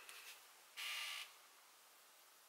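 A few faint clicks, then a single half-second scrape or rasp from handling a small jar of loose highlighter powder, followed by quiet room tone.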